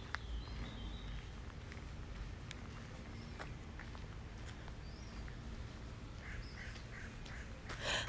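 Quiet park ambience: a low wind rumble on the microphone, faint scattered bird chirps with a short run of three chirps near the end, and light footsteps on a gravel path.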